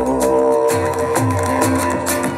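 Live acoustic guitar and drum kit playing together, with frequent cymbal hits. A held chord gives way about half a second in to a steady pattern of low beats.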